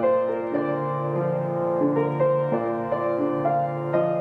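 Upright piano played with both hands: a melody line in the upper register over held low notes and broken-chord accompaniment, with the notes ringing into each other.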